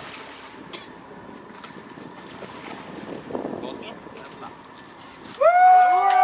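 Wind and sea noise on a boat's deck as a hooked tuna splashes alongside. About five seconds in, a loud, drawn-out yell starts and holds one pitch.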